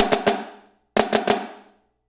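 Marching snare drum played with sticks: two short groups of quick flams about a second apart, each stroke a soft grace note just ahead of a louder primary, with the tight head ringing briefly after each group.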